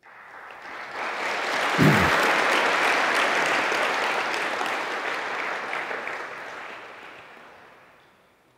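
Audience applauding, swelling over the first couple of seconds and then slowly dying away toward the end.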